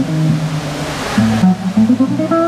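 Solo guitar playing slow chord-melody: held chords and single melody notes over low bass notes.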